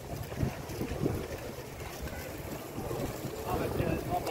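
Wind buffeting the microphone with an irregular low rumble during an outdoor walk, with faint voices of people nearby toward the end.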